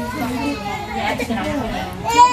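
Children playing and talking in a gymnastics gym: voices throughout, with no clear thumps or knocks.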